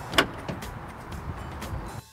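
A sharp latch click as the 2017 Honda Ridgeline's dual-action tailgate is unlatched to swing open to the side, followed by a steady low background hum.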